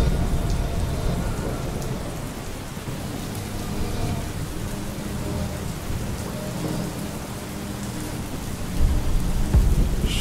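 Steady rain with low rumbling thunder, the rumble growing heavier near the end.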